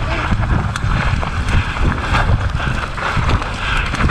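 Mountain bike rolling fast down a dirt trail: a steady rumble of knobby tyres on dirt and wind buffeting the microphone, with irregular clattering as the bike jolts over bumps.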